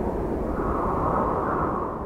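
Logo-intro sound effect: a long rushing whoosh with a deep rumble underneath, holding loud and starting to fade near the end.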